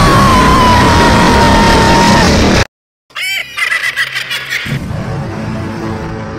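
Very loud, heavily distorted meme sound effect: a dense noisy blast with a thin whistling tone that cuts off suddenly about two and a half seconds in. After a short silence, a second distorted clip starts with shrill, squawk-like cries over noise.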